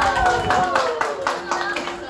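A group of people clapping together in a steady rhythm, about four claps a second, with voices over the top.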